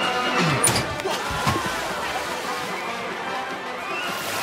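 Background music over crowd noise, with a sharp hit about half a second in and a deep thud a second later: a thrown ball striking a dunk tank's target and the seated person dropping into the water.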